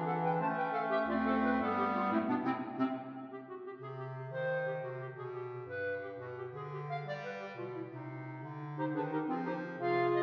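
Clarinet choir of clarinets, basset horn and bass clarinet playing a choro. About three seconds in, the full ensemble drops back to a single clarinet melody over a walking bass-clarinet line, and the other parts come back in near the end.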